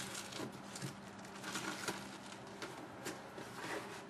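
Faint outdoor night ambience: a soft hiss with a steady low hum, broken by scattered soft clicks and ticks, and no thunder.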